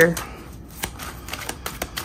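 A thick deck of oracle cards being shuffled by hand, with light, irregular clicks and slaps of card edges.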